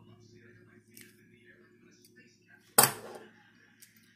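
Faint small metallic clicks from two pairs of pliers twisting open a 14-gauge fence-wire ring, one of them about a second in, over a low steady hum.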